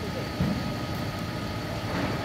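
Steady low rumble of outdoor urban background noise, with a faint steady high whine over it and a brief faint voice about half a second in.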